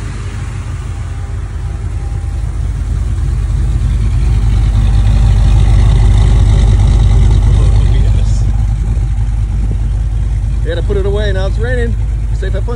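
383 stroker small-block V8 of a Chevy C1500 truck, fed by Edelbrock Pro-Flo 4 multi-port fuel injection, idling smoothly and steadily with the cooling fan running. It grows louder in the middle, heard close to the twin exhaust tips, then eases off.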